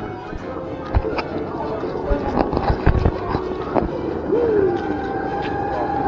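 Indistinct voices mixed with music, with a few dull thumps in the first four seconds and a steady held note near the end.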